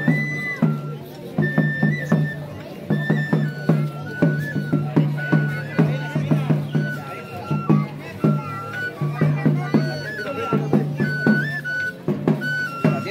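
Traditional flute-and-drum procession music: a small wooden flute plays a high, stepping melody over a steady beat on a small stick-struck drum.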